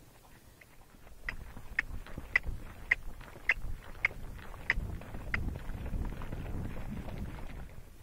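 Tennessee Walking Horse moving out across arena sand, heard from the saddle. A row of sharp clicks comes about twice a second, then gives way to a louder low rumble of movement in the second half.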